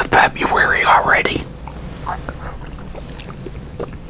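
A man's voice, soft and close, for about the first second and a half, then a quieter stretch of scattered faint clicks from eating.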